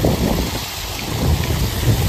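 Wind buffeting the microphone: an irregular low rumble with a faint hiss above it.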